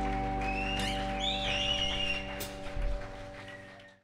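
A live rock'n'roll band's final chord held and ringing out on electric guitar and double bass, with some high wavering notes over it and a single sharp click about two and a half seconds in. The chord dies away and the sound fades to silence at the very end.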